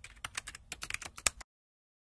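Computer keyboard typing sound effect: a quick run of key clicks, synced to a title appearing letter by letter, that stops suddenly about one and a half seconds in.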